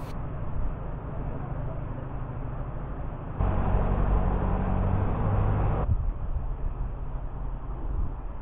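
Narrowboat diesel engine running steadily at cruising speed, a low even hum. It grows louder for a couple of seconds from about three and a half seconds in as the boat passes under a bridge, then drops back.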